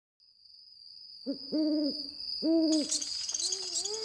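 Owl hooting: a short hoot, then two longer level hoots about a second apart, followed near the end by a softer wavering call. Under it runs a steady high-pitched insect trill.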